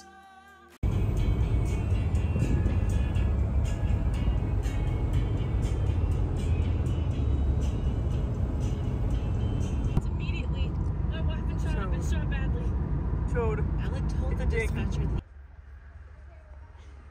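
Road noise inside a moving car's cabin, a steady low rumble that starts abruptly about a second in and cuts off about a second before the end. Voices are heard over it in the last few seconds of the rumble.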